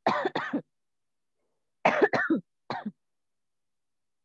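A person coughing in three short bouts: one at the start, then two more close together about two seconds in.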